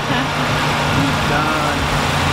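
A vehicle engine idling steadily, a low even hum under a haze of background noise, with a few faint snatches of speech.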